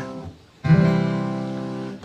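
Acoustic guitar: a chord rings out and fades in the first half-second, then a fresh chord is strummed about half a second in and left to ring.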